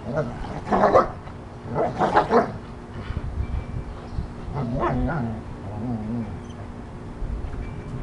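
Dog barking: two short, loud barks about a second apart near the start, then a quieter vocal sound with a wavering pitch around the middle.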